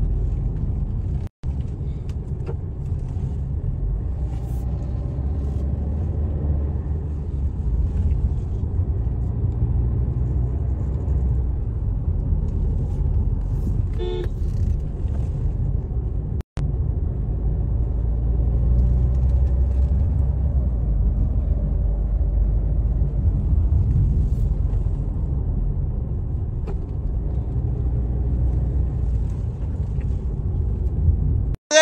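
Steady low rumble of road and engine noise inside a Tata car's cabin while driving, broken by two brief dropouts. A short pitched tone sounds a little before halfway through.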